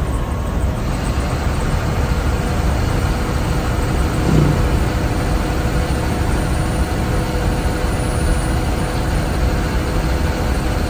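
Steady engine drone and road rumble heard from inside the cab of a state-transport (SETC) diesel bus cruising on a highway, with faint steady whines over it. About four seconds in a short low sound stands out briefly above the drone.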